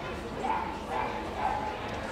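A dog giving three short, high yips about half a second apart.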